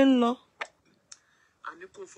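A voice speaking, trailing off just after the start; a pause with two brief faint clicks, then quieter speech resumes near the end.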